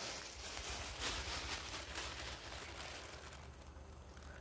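Thin black plastic bag rustling faintly as it is pushed down into a tub of liquid; the soft crinkle is strongest in the first couple of seconds and fades out.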